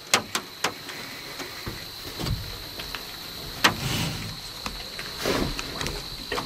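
Quiet close-up handling clicks and soft rustles, with a few soft breathy swells around the middle and near the end, over a faint steady high whine.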